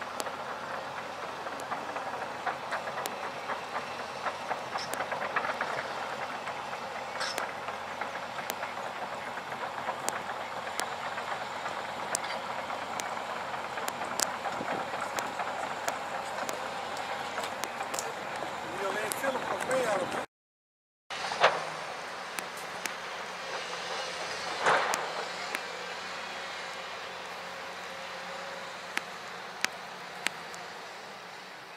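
Steady outdoor worksite noise with many small irregular clanks and clicks, typical of a tracked excavator working at a distance. The sound breaks off for under a second about two-thirds of the way through, then goes on more quietly.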